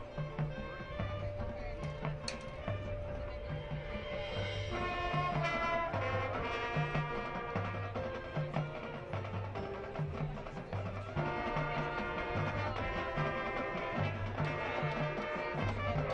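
High school marching band playing: held brass chords over a regular pulse of bass drums and low brass. The band swells louder about five seconds in and again about eleven seconds in.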